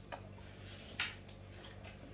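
Faint eating sounds: two short clicks about a second apart over a steady low hum.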